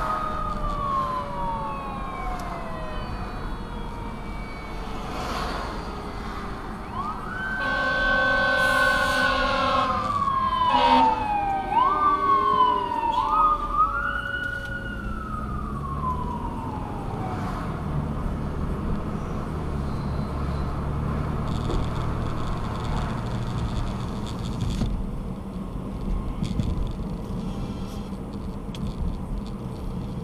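Fire engine siren wailing in long falling and rising sweeps, with a steady air-horn blast about eight seconds in and a few quick rising yelps just after. The siren dies away about halfway through, leaving a low engine rumble from the traffic.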